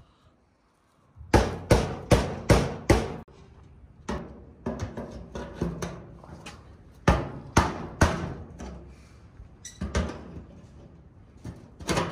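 Hammer tapping a pry bar against the snap ring of a steel fuel tank's sending unit, knocking the ring round to free it. A quick run of five sharp metal knocks comes after a moment of silence, then single knocks every second or two.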